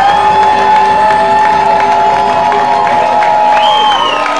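Audience cheering and clapping as a live song closes, with one long steady high note held for nearly four seconds that breaks off near the end.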